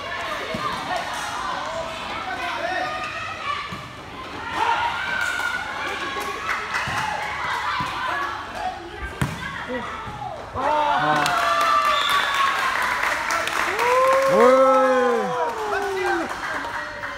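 Players and spectators shouting and calling during a futsal game, with the thuds of the ball being kicked and bouncing on the court. Near the end a long, loud shout rises and falls in pitch.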